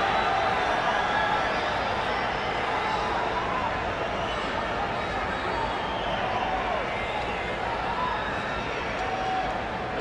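Football stadium crowd: a steady din of many voices talking and calling at once, with single shouts rising faintly out of it now and then.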